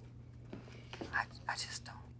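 Faint whispering: a few soft, breathy syllables about a second in and again near the end, over a low steady hum.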